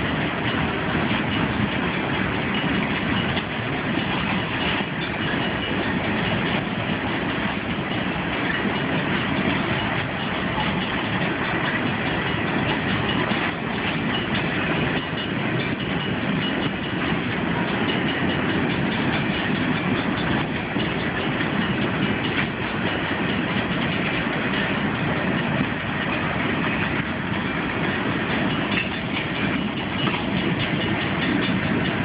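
A long freight train rolling steadily past with a continuous, even noise of steel wheels on the rails that neither builds nor fades.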